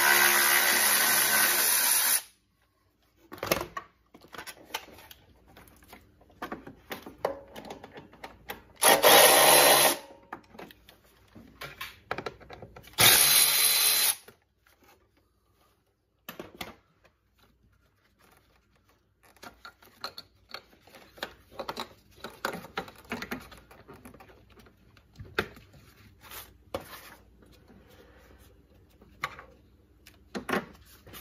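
Cordless power ratchet running in three short bursts, undoing the air-intake fasteners: the first stops about two seconds in, the others come near the 9- and 13-second marks. Between and after the bursts are light clicks and knocks of intake parts being handled.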